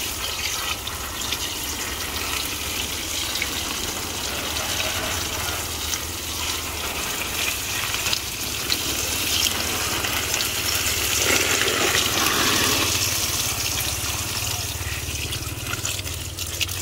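Water sprinkling from the rose of a plastic watering can onto seedlings and soil, a steady spray that grows a little louder about two-thirds of the way through, over a low steady hum.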